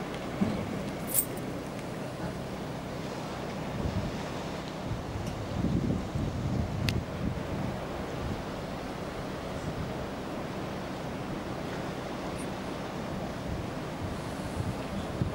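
Surf washing on the shore with wind buffeting the microphone, gustiest about halfway through, over a faint steady low hum and a couple of brief clicks.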